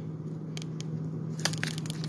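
Plastic bag of frozen fish fillets being handled and turned over, its film crackling in a few sharp crackles, mostly in the second half, over a steady low hum.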